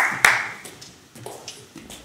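Hand-clapping applause dying away: a last few claps in the first half second, then only scattered soft claps and taps.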